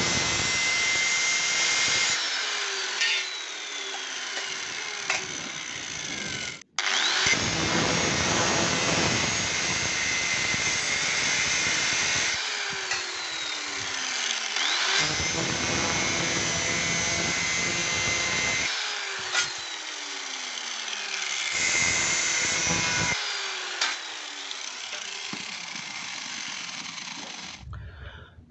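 Electric angle grinder with an abrasive disc grinding stainless-steel hard-drive covers in about four short bursts, as a spark test of the metal. After each burst the whine falls away as the disc winds down.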